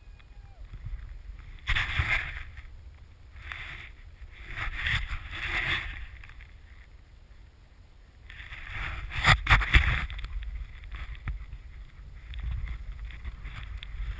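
Snowboard riding through deep powder: long rushing swishes as the board cuts through the snow, three main surges, with wind rumbling on the microphone and a few sharp knocks about two-thirds of the way in.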